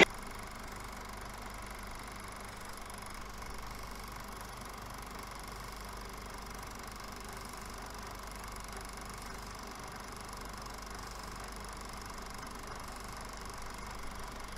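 A steady, unchanging low hum with a faint hiss over it.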